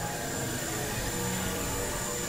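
Experimental electronic noise music: a dense, grainy synthesizer drone with steady held tones and a thin high whistle that cuts off near the end.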